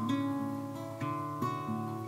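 Acoustic guitar strumming chords, the chord ringing on with fresh strums about a second in and again shortly after.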